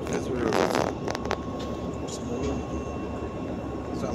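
A steady low mechanical rumble with a faint steady whine, with a few sharp clicks about a second in and a brief voice near the start.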